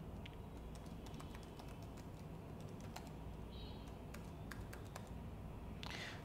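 Faint, irregular keystrokes on a computer keyboard as a password is typed in.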